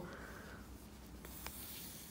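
Faint rustling and rubbing of a plastic crochet hook and fingers working through soft faux fur yarn, with a couple of small ticks about halfway through.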